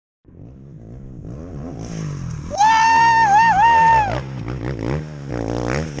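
Off-road race vehicle's engine revving up and down as it drives. From about two and a half seconds in, a loud, high wavering tone cuts in over it for about a second and a half, then falls away.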